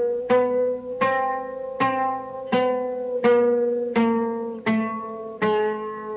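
Oud plucked with a feather plectrum, one note about every 0.7 seconds, each ringing and fading. The notes step up by very small intervals and then back down, showing the closely spaced notes that the oud can play.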